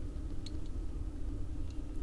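Low steady room hum with two faint clicks as a metal die-cast toy car is handled and turned over in the fingers.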